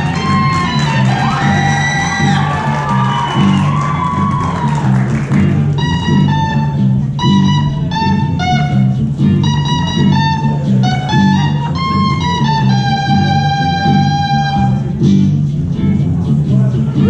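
Guitar played live through an amplifier: bent, sliding notes for the first few seconds, then a melody of separate held notes, over a steady repeating low accompaniment.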